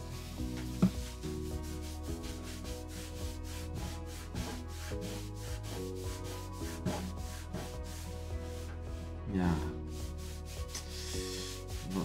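Microfiber cloth rubbed briskly back and forth over the satin-finished koa top of a Taylor GS Mini acoustic guitar, about five strokes a second, scrubbing off years of sweat and grime with satin guitar cleaner.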